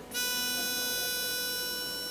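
A pitch pipe sounding one steady reedy note that starts suddenly, holds, then slowly fades, giving an unaccompanied choir its starting pitch.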